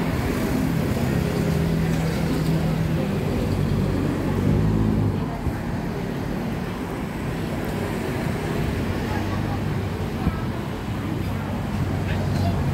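Street traffic with a vehicle engine running steadily nearby, a low hum that eases a little about halfway through.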